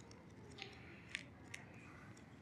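Faint paper rustles of Bible pages being leafed through by hand, three brief soft flicks against a quiet room.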